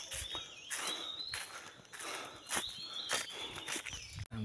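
Footsteps on a trail covered in dry leaves, a crunchy step about every half second or so. Faint high chirps recur over them.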